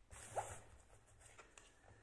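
Faint, short rasp of an oracle card sliding across a cloth-covered table as it is turned over, in the first half-second, then near silence.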